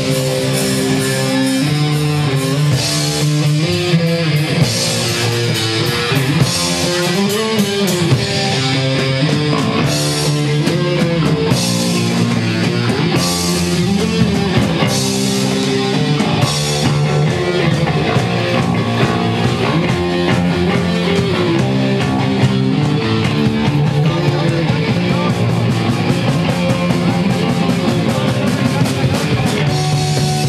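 Punk band playing live: electric guitar, bass guitar and drum kit, loud and steady throughout.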